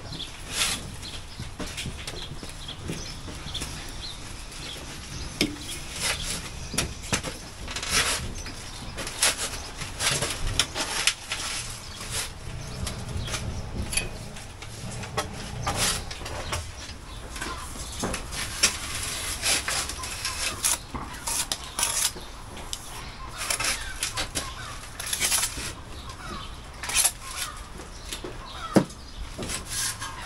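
Bricklaying work at a concrete-block wall: irregular taps, knocks and scrapes of hand tools and a spirit level against the blocks, some sharp and loud.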